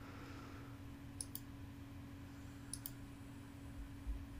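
Faint computer mouse clicks: two quick pairs of clicks about a second and a half apart, over a faint steady low hum.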